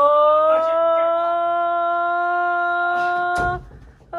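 A person's long, held "Ohhh" exclamation, sliding up in pitch at the start and then sustained on one note for about three and a half seconds. A single thump sounds just before the call stops near the end.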